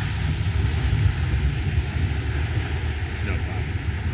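Wind buffeting a handheld camera's microphone outdoors: a rough, fluttering low rumble.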